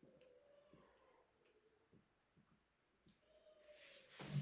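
Faint sound of a marker writing on a whiteboard: thin squeaks as the tip drags across the board, with light ticks between strokes.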